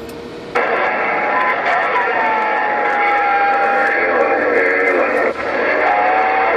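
President HR2510 mobile radio's speaker receiving a transmission. A thin band of hiss and garbled, distorted voice comes up about half a second in, with a steady whistle tone sliding slightly in pitch over it. The sound breaks off briefly near the end, then comes back.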